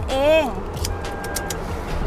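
Steady outdoor background noise with road traffic, and a few faint clicks.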